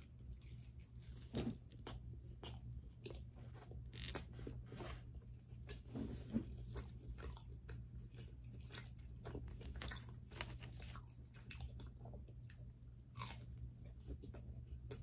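A slice of pizza being bitten and chewed close to the microphone: faint, irregular crunches and mouth clicks over a steady low hum.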